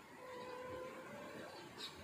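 A young girl crying quietly: a faint, held whimper lasting under a second, then a sniff near the end.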